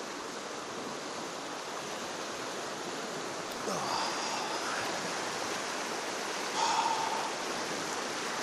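River rapids rushing over rocks: a steady, loud, even rush of whitewater, described as quite noisy. Two brief faint higher sounds sit over it, about halfway through and near the end.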